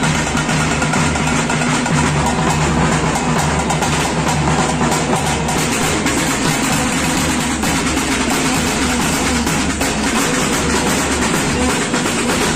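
A procession drum band playing loud, continuous drumming on barrel drums with clashing cymbals, many fast strokes packed together.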